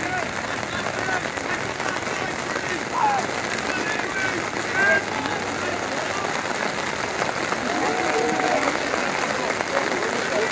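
Scattered distant shouts and calls from lacrosse players and the sideline over a steady outdoor hiss, with two louder calls about three and five seconds in.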